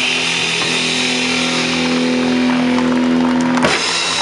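Live rock band ending a piece: an electric guitar holds one sustained note over a fading wash of cymbals, and the note stops abruptly with a sharp click near the end.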